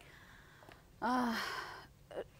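A brief pause, then about a second in a person gives a breathy, voiced sigh that falls in pitch and fades away.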